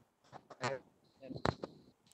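Faint, brief voice sounds with a sharp click about one and a half seconds in, heard over an online meeting's audio between the presenter's remarks.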